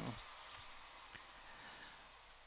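Very faint steady hiss, close to silence, with one soft click a little over a second in.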